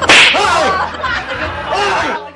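A sharp, loud whip-crack sound effect cuts in at the start, followed by high, wavering, sliding tones from the edited-in clip.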